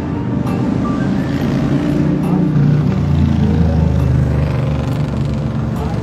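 Amplified music from a street singer's portable loudspeaker, a song with guitar accompaniment. A low steady rumble, like passing traffic, swells under it in the second half.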